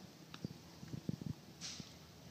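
Faint handling noise of a compression gauge hose being moved and fitted at an outboard engine's cylinder head: scattered light knocks and clicks through the middle, then a short soft hiss near the end.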